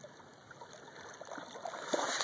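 Faint water sloshing and trickling as a dog swims and wades through shallow water, growing a little louder toward the end.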